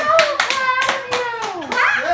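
A few people clapping their hands, about four claps a second, while voices call out in long cheers that fall in pitch.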